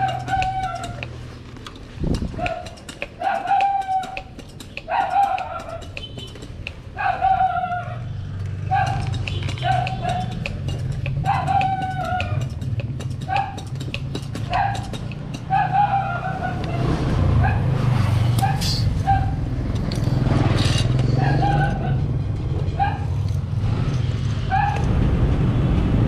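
Scooter tyre being pumped up with a small mini pump: a short squeaking note, gliding slightly down, repeats irregularly about once a second over a low steady hum.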